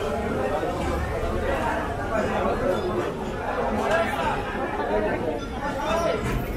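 Several people talking at once: a steady babble of overlapping voices.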